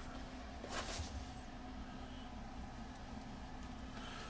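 Room tone with a faint steady low hum, and one short soft hiss just under a second in.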